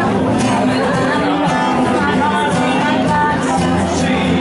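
Live acoustic guitar strumming with a woman singing into a microphone.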